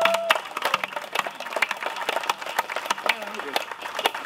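A crowd applauding, many irregular claps, with a few voices under it.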